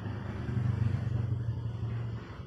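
A low, steady engine rumble from a passing motor vehicle, growing louder about half a second in.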